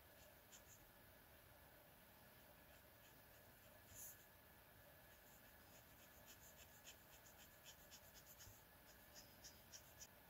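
Faint scratching of a Winsor & Newton Brushmarker's brush nib on sketchbook paper, short strokes that come quicker in the second half, with one brief louder scratch about four seconds in.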